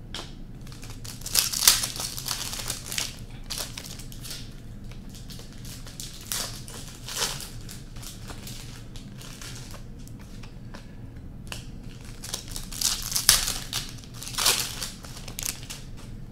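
Hockey trading cards being sorted by hand: cards sliding and flicking against one another and tapped down onto piles on the table, in irregular rustling runs that are loudest about a second and a half in and again around 13 to 15 seconds in.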